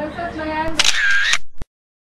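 Camera shutter sound: a short shutter burst about a second in, followed by a single click.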